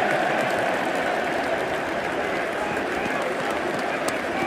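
Football stadium crowd: a steady mass of many voices and applause blending into one continuous noise.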